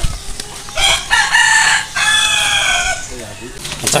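A rooster crowing once: a long crow starting about a second in, with a short break in the middle and falling in pitch at the end.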